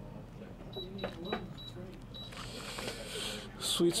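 A run of about five short, high electronic beeps. Then a foil trading-card pack crinkles and rustles as it is handled.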